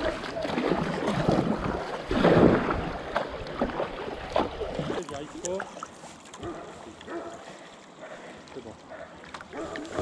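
Water rushing and splashing along a plastic kayak's hull as it runs a small riffle, loudest about two and a half seconds in, then quieter lapping on flat water in the second half, with a few paddle splashes.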